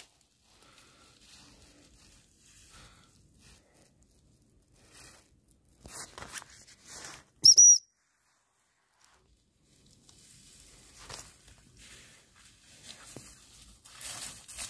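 A short, high whistle, two quick arched notes about halfway through and the loudest sound. Around it is faint rustling of dry reeds and grass.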